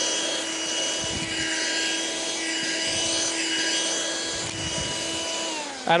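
Hoover Handy Plus 6-volt cordless handheld vacuum cleaner running steadily with a high motor whine and suction hiss as its nozzle is worked over a fabric chair seat. Near the end it is switched off and the whine falls away.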